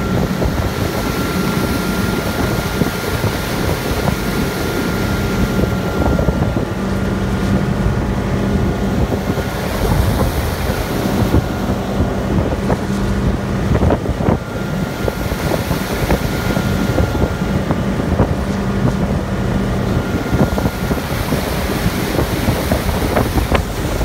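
Ski boat's engine running steadily at towing speed, with wind buffeting the microphone and the rush of water from the wake.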